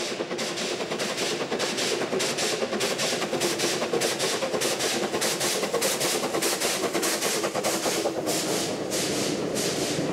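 Steam locomotive hauling a passenger train, its exhaust beating steadily and rapidly at about four to five chuffs a second.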